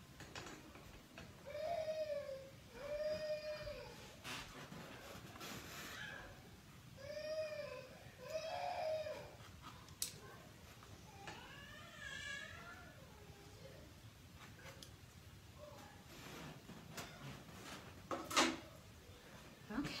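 An animal's drawn-out cries, about five calls that each rise and fall in pitch, coming in pairs with pauses between, and a few faint clicks in between.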